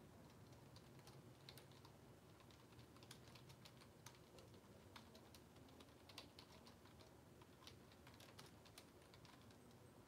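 Faint, irregular clicks of typing on a keyboard, over quiet room tone.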